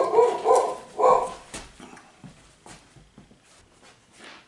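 A dog barking, a quick run of four or five barks in the first second and a half, then faint knocks and shuffles. The dog goes off whenever the neighbours move.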